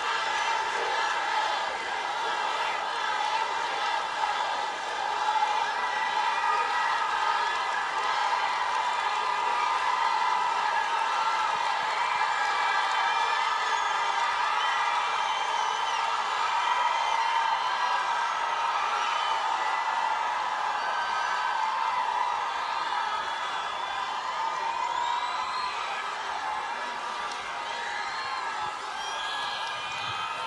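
Large concert crowd cheering and chanting steadily, with scattered whoops rising out of the din.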